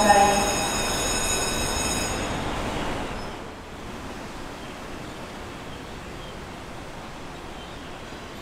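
The tail of a loudspeaker dispatch announcement in a fire station's appliance bay, with a steady high-pitched tone over it that fades out about two and a half seconds in. After that comes faint, steady street ambience.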